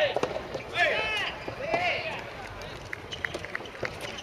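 Two drawn-out shouted calls from soft tennis players, each rising then falling in pitch, about one and two seconds in. A few short sharp taps follow.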